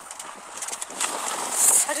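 Strong wind blowing outside, a rushing noise that swells about a second in.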